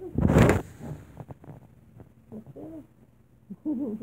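A loud, brief rush of handling noise on the phone's microphone just after the start as the phone is turned around. Then come two short wavering hoot-like vocal sounds, one about halfway through and one near the end.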